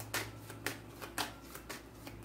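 Tarot deck being shuffled by hand: short, crisp card flicks about twice a second.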